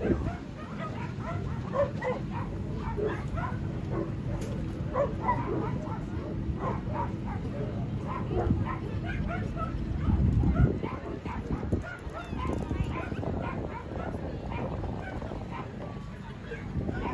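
Several dogs barking and yapping in short, scattered calls over a steady low background, with a brief low rumble about two-thirds of the way through.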